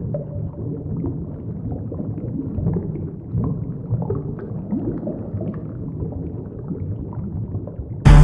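Underwater bubbling sound effect: a low rumble with many short gurgling bubble sounds, steady throughout.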